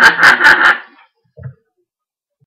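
A man's loud burst of laughter, a run of rapid 'ha' pulses that stops about a second in, followed by one soft low thump.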